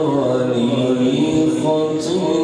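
A male qari reciting the Quran in the melodic tajweed style, holding one long drawn-out phrase whose pitch dips and then climbs again near the end.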